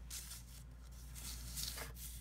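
A plastic map protractor being handled and slid across a paper map, giving a few soft rustles and scrapes over a faint steady low hum.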